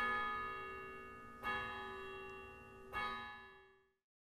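A bell struck three times, about a second and a half apart, each strike ringing on and fading away.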